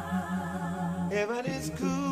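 A cappella singing: voices holding sustained notes with vibrato, moving to new notes a little over a second in.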